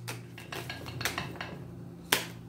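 A deck of tarot cards being shuffled by hand: a run of light clicks and flicks as the cards slide and tap against each other, over a steady low hum.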